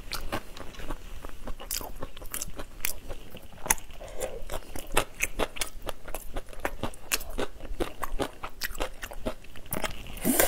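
Close-miked eating of whole shell-on shrimp: crunching and chewing through the shells, heard as a run of irregular sharp clicks and crackles.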